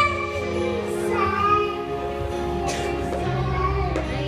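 A young girl singing into a microphone with musical accompaniment, holding long notes that glide in pitch.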